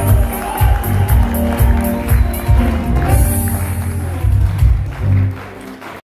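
Live band music played on stage, with keyboards and a heavy pulsing bass beat under regular percussion strokes. The music drops away sharply about five seconds in.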